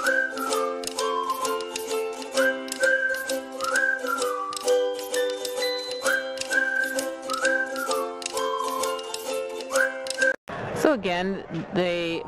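Background music with a steady clicking beat and a high, sliding melody over held tones. It cuts off about ten and a half seconds in, and a man's voice takes over.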